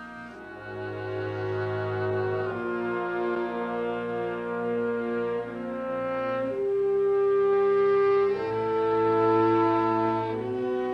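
Slow orchestral score of held brass chords led by French horns, the chords shifting every second or two and swelling louder in the second half.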